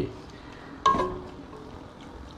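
A wooden spoon stirring vegetables in a clay pot. Just under a second in there is one sharp knock of the spoon against the pot, with a short ring.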